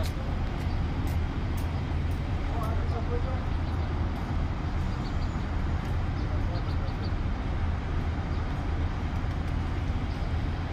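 Steady low rumble of street traffic and idling engines, with no distinct events.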